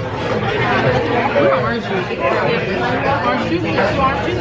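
People talking: voices and chatter throughout, with no other sound standing out.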